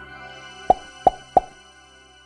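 Channel logo jingle: a short musical sting with three sharp pops in quick succession, about a third of a second apart, near the middle. The music then fades away.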